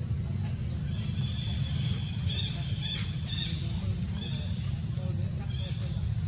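A series of short, high-pitched animal chirps, repeated several times and clearest about two to three and a half seconds in, over a steady low rumble.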